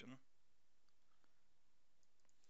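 Near silence: faint room tone in a pause of the narration.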